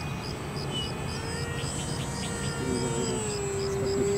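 Propeller drone of a large radio-controlled cargo airplane flying overhead, a steady tone whose pitch falls slightly over the last two seconds.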